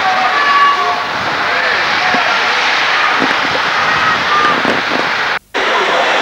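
Indistinct distant voices over a steady rushing hiss of outdoor camcorder sound. The sound breaks off for a moment near the end, where the footage is cut.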